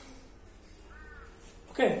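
Quiet room tone with a faint, brief high call about halfway through, then a man's voice starting loudly near the end.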